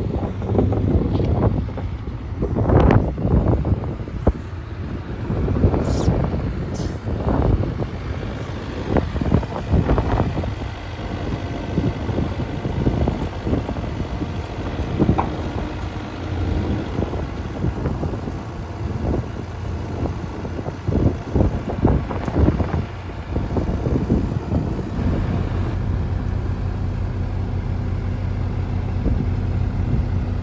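Kubota U55-4 mini excavator's diesel engine running, with repeated clanks and knocks of steel on steel as the machine moves on the steel bed of a flatbed truck. The knocks die away for the last few seconds, leaving the steady engine hum, with wind on the microphone.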